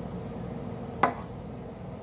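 An empty aluminium beer can set down on a hard surface: one sharp clink about halfway through, over a steady low room hum.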